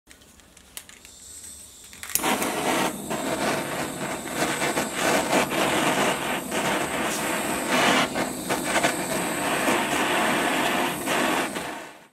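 Handheld gas torch burning with a steady rushing hiss as its flame heats a steel shrink-fit endmill holder. It starts abruptly about two seconds in and fades out near the end.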